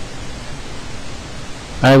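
Steady hiss of background noise with no distinct events, then a voice begins speaking near the end.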